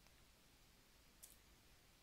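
Near silence, room tone, with one faint, short click a little over a second in.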